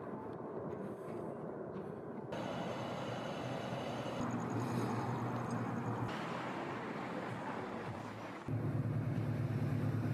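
Outdoor street ambience: a steady wash of wind and traffic noise that changes abruptly at several cuts. About eight and a half seconds in, it turns to a louder, lower vehicle rumble.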